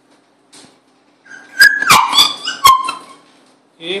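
A toddler's high-pitched squeal, held and then falling in pitch, about a second in, crossed by a few sharp knocks.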